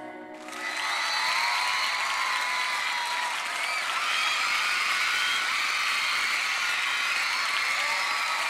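The song cuts off in the first half second. Then a studio audience cheers and applauds steadily, with many high-pitched screams.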